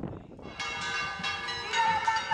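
Church bells ringing, several bells sounding together and struck again and again, starting suddenly about half a second in after a moment of wind noise on the microphone.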